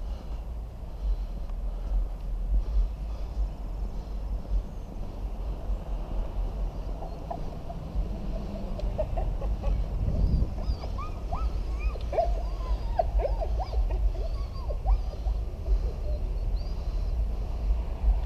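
Wind buffeting a small action-camera microphone, a steady low rumble. From about seven seconds in to about sixteen seconds, birds chirp in a quick run of short rising and falling calls.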